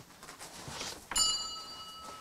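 A small metal bell struck once about a second in, ringing out with a bright, clear tone and fading over about a second.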